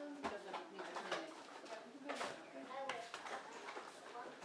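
Indistinct voices talking in a room, with no clear words.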